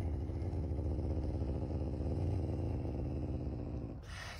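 Caracal growling low and steadily, a continuous rumble.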